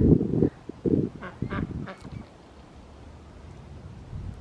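Domestic ducks giving a few short quacks between about one and two seconds in, after a brief low rumble at the start.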